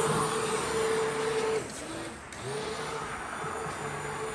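Electric hand blender running in a bucket of blueberry soft-serve ice cream mix, a steady motor hum; it cuts out about a second and a half in and starts up again under a second later.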